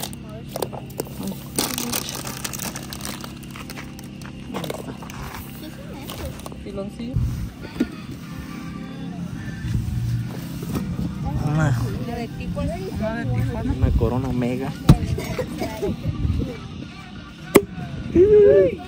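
Indistinct voices and music in the background. A plastic bag crinkles in the first couple of seconds, and there are two sharp clicks late on.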